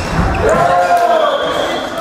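A volleyball thudding at the start, then a player's long, drawn-out shout of celebration as the point is won, in a gymnasium.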